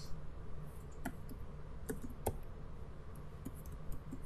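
Computer keyboard being typed on: scattered separate key clicks, the sharpest a little after two seconds in, over a steady low hum.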